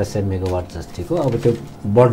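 Only speech: a man talking, with brief pauses between phrases.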